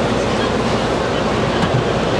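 Steady, loud background noise of a busy street-food market: a continuous low rumble with indistinct voices in it.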